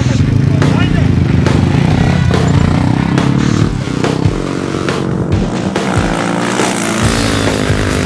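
Rally motorcycle engine running, mixed with background music.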